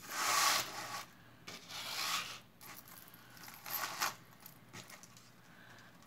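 A metal chain necklace being handled, its links rustling and clinking together in several short bursts; the loudest burst comes in the first second.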